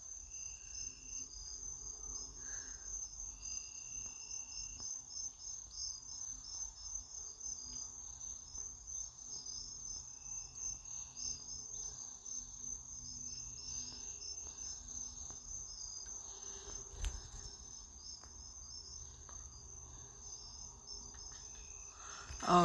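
Crickets chirring steadily in the background over a low hum, with a single soft knock about seventeen seconds in.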